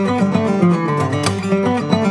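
Handmade Greenfield G3 acoustic guitar played fingerstyle in a Spanish folk style: quick plucked notes over moving bass notes, with one sharp percussive accent about a second in.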